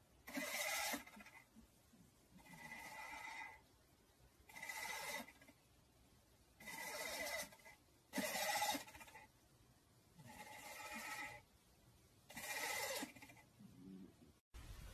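A cat snoring in its sleep: seven rasping, whistly breaths, one about every two seconds.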